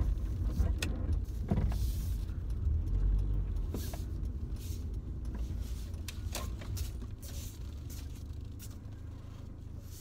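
Low rumble of a car's engine and tyres heard from inside the cabin while driving slowly, with scattered small clicks and knocks; it grows gradually quieter toward the end.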